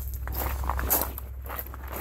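Footsteps on gravelly ground, a quick run of uneven steps while walking away, over a steady low hum.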